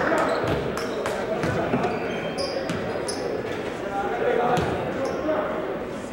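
Basketball bounced a few times on a gym floor by a player at the free-throw line, the knocks echoing in the hall over crowd chatter.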